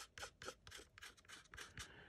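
Fingertip rubbing dried liquid masking fluid off the painted plastic hull of a scale model, in faint, quick strokes of about five a second.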